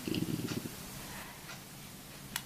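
A person's brief creaky, fluttering hum lasting under a second, then quiet room tone.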